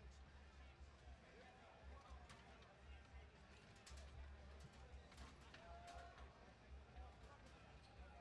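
Near silence: faint arena background of distant voices, with a few light clicks and knocks over a low hum.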